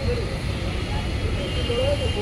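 Shop ambience: a steady low rumble with faint background voices.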